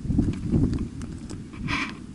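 Footsteps on rough gravelly ground, a few short knocks, over a rumble of wind on the microphone. A brief hissing scrape comes near the end.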